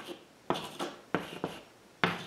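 Chalk on a chalkboard: short writing strokes, each starting with a sharp tap and trailing off in a scratchy scrape, two of them beginning about half a second and a second in, as lines and numbers are drawn.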